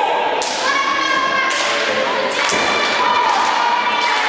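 Three heavy thuds on a wrestling ring's canvas, about a second apart, as a wrestler moves across the mat. Spectators' voices carry over them.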